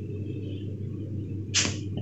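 Quiet room with a steady low hum, and one short breathy whoosh about one and a half seconds in.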